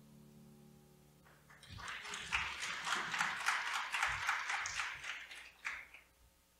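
The last piano chord dying away, then a congregation applauding for about four seconds, stopping shortly before the end.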